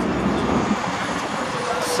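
Steady downtown street traffic noise, with buses and cars running by and a brief hiss near the end.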